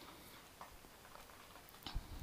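Faint scraping and light ticks of a spatula stirring fried onions and green chillies in a pan, with a sharper click near the end.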